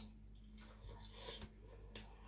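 Faint wet chewing of a mouthful of raw vegetable and spicy papaya salad, with a sharp mouth click at the start and another near the end.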